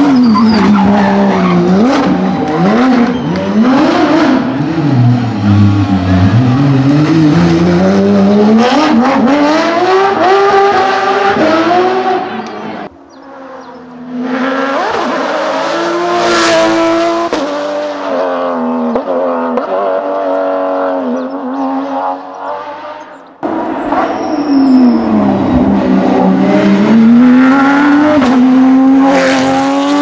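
Porsche 911 GT rally car's flat-six engine revving hard at full throttle, its pitch climbing steeply through each gear and dropping back on shifts and braking. The sound breaks off abruptly about 13 and 23 seconds in, where the recording jumps to another pass.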